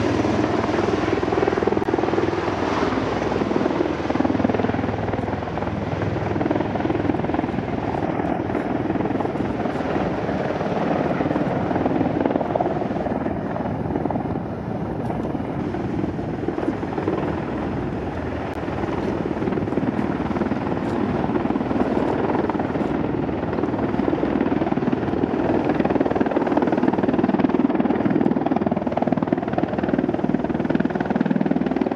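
Bell Boeing V-22 Osprey tiltrotors flying low in helicopter mode, their big proprotors making a steady, heavy rotor thrum that grows louder in the last few seconds as the aircraft approach.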